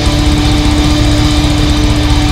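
Death metal played live on a drum kit with Meinl cymbals: a very fast, even rapid-fire run of double-bass kick drums under a held, distorted guitar note.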